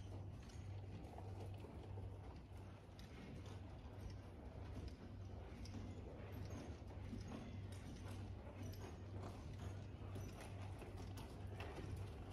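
Faint, soft hoofbeats of a Quarter Horse gelding walking on dirt arena footing.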